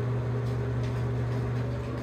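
A steady low mechanical hum, with a few faint clicks.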